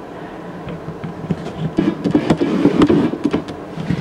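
A camera lens refocusing: a small motor whirring with irregular clicks and light handling knocks, busier from about two seconds in.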